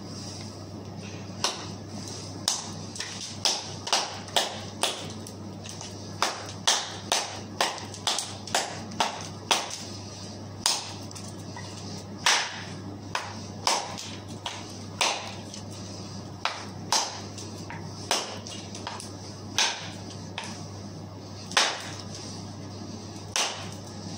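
A knife blade hacking chips off the end of a wooden chair leg: sharp, irregular chopping knocks, about one to two a second, some two dozen in all. A steady low hum runs underneath.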